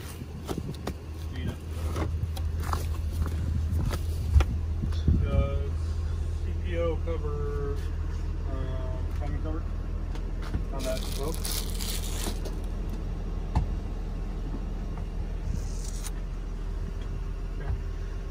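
Steady low engine hum of the parked tool truck running, with muffled voices in the background and a brief rustle about eleven seconds in.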